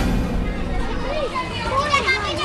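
Children's voices talking and calling, high-pitched and rising and falling, starting about a second in over a low rumble.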